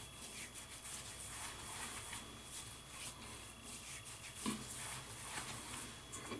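Faint rustling of hands rubbing against the face, working aftershave balm into the skin, with soft irregular strokes.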